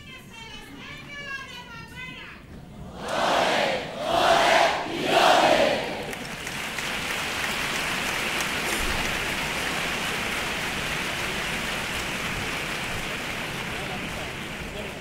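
Audience crowd: three loud outbursts of shouting about three to six seconds in, then a steady, sustained round of applause.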